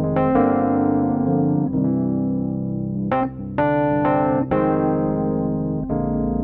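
Toontrack EZKeys Electric MK I, a sampled Rhodes-style electric piano with its chorus effect, playing held chords over low bass notes. The chords change every second or so.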